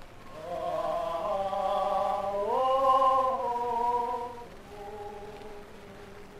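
Cantorial liturgical singing on long held notes that step up in pitch about two and a half seconds in, then die away near the end.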